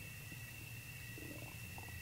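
Quiet room tone of the recording: a steady low hum with a faint high-pitched whine, and a faint brief sound a little past halfway.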